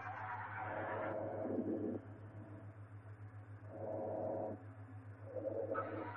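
Quiet droning ambient soundtrack: a steady low hum with soft, murky tones swelling up and fading three times.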